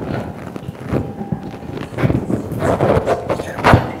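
Clip-on lapel microphone being handled at the collar of a blouse: irregular rustling and knocks as fingers and fabric rub against the mic, with the loudest knock near the end.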